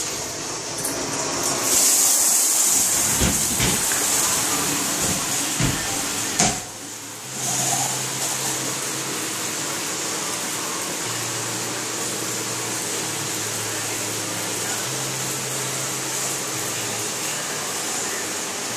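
Steam shower cabin's body jets spraying water against the glass, a steady hiss. In the first few seconds there are some knocks as the control buttons are pressed; about six and a half seconds in the spray cuts out briefly, then comes back with a faint low hum underneath.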